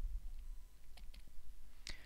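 Stylus tip clicking and tapping on a tablet screen during handwriting: a few sharp clicks about a second in and the loudest one near the end, over a faint low hum.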